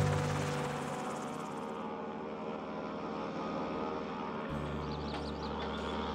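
Single-engine floatplane's piston engine and propeller droning steadily in flight, with the low tone shifting about four and a half seconds in.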